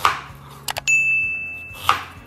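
Chef's knife chopping onion on a plastic cutting board, one stroke at the start and another near the end. In between come two quick clicks and then a steady high ding lasting about a second, a subscribe-button click-and-bell sound effect.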